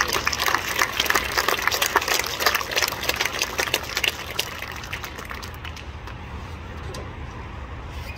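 A small seated audience applauding, fullest for the first four seconds or so, then thinning to scattered claps and dying away.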